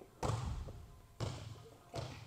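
A volleyball bouncing on the gym floor: two bounces about a second apart, each followed by a short echo.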